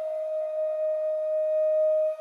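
Music: a flute holding one long, steady note in a slow song's instrumental introduction.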